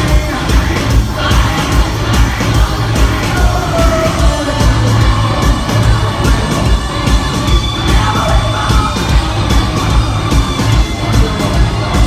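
A live metal band playing loud through a concert sound system, with a steady, heavy drum and bass beat. The crowd is heard faintly under it.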